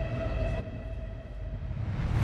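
Inside a train carriage: the low, steady rumble of a train running, with a thin steady whine that stops about half a second in.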